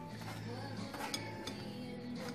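A metal spoon clinking lightly against a wire-mesh strainer and glass bowl as cooked raspberries are worked through the sieve, a few brief clicks over soft background music.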